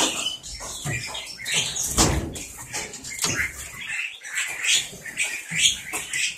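Bali mynas in an aviary chirping and calling in short, scattered calls, with a thump about two seconds in.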